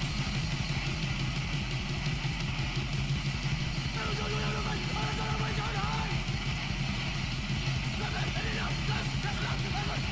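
Anarcho-punk song played from a vinyl record: full band with distorted electric guitar and busy drumming, and shouted vocals about midway and again near the end.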